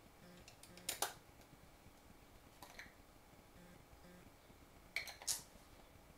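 A few light clicks from a detachable camera lens being handled and turned in the hands while it is checked for scratches: one about a second in and two close together near the end, over quiet room tone.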